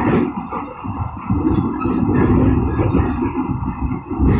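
Low, steady rumble of a passenger train running, heard from inside the coach: wheels on the track and the car body shaking.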